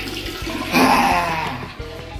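Toilet flushing: a rush of water that swells about a second in, then fades.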